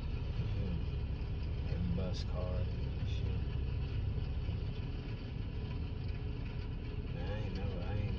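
Car idling at a standstill, heard from inside the cabin as a steady low rumble, with faint voices now and then.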